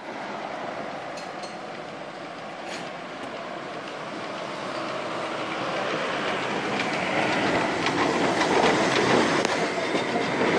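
Darjeeling Himalayan Railway narrow-gauge steam locomotive approaching along the roadside track. Its running noise grows steadily louder as it draws near.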